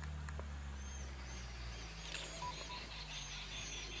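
Bird calling with many short, high chirps in quick runs, over a steady low hum.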